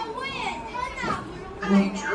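Several young children's voices overlapping as they talk and read aloud over their books, with a brief louder low voice sound near the end.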